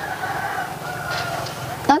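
A rooster crowing: one long, drawn-out call.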